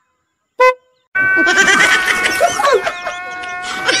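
A Yamaha Aerox 155 scooter's electric horn gives one short, clipped beep about half a second in: it no longer sounds full, a fault that came back after its failed relay was repaired, cause unknown. From about a second in, two young men laugh loudly over a steady held tone.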